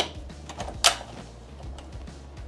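Hat in its cap frame being fitted onto the cap driver of a Ricoma TC1501 embroidery machine: a few light clicks and one sharper click a little under a second in, over a low steady hum.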